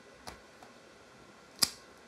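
A wooden-handled rubber stamp pressed down onto a passport page on a tabletop: a faint tap, then one sharp click about a second and a half in.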